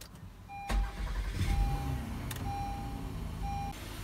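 A van's engine starting about a second in and then idling steadily. A dashboard warning chime beeps about four times over it.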